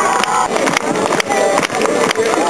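Live folk music from a passing parade group, with a steady beat of sharp strikes.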